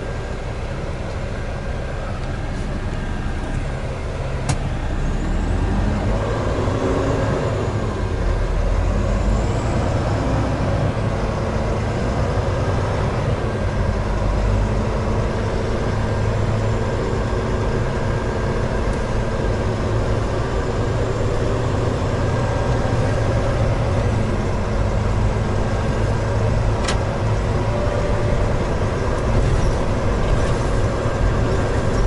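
Volvo VNL860 semi-tractor's diesel engine heard from inside the cab as the truck pulls away and drives slowly without a trailer. The engine hum grows louder about five seconds in as it takes up load, then runs steadily.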